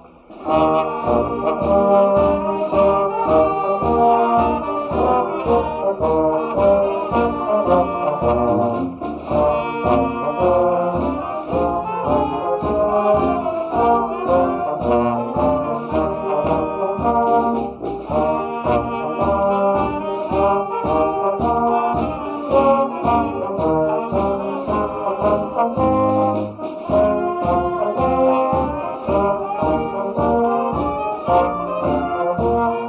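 A wind band of brass and woodwinds, including sousaphone, euphonium, trumpets and saxophones, playing a tune with a steady beat. The music comes in just after a brief gap at the very start.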